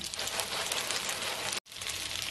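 Egg-and-starch-coated tofu cubes sizzling and crackling in oil in a frying pan over low heat, with a brief dropout about one and a half seconds in.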